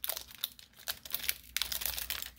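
The foil wrapper of a Pokémon trading-card booster pack being torn open by hand, in a run of irregular crinkles and crackles.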